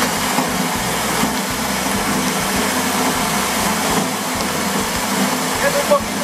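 Small electric coffee huller's motor running with a steady hum and whirr.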